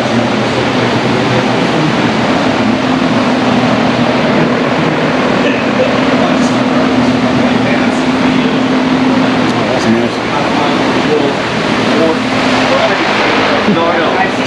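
Loud, steady machine noise, with a low hum running through it for stretches of several seconds.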